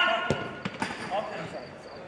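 A football being kicked and struck several times in quick succession, sharp thuds in the first second of a shot on goal, with players shouting over them.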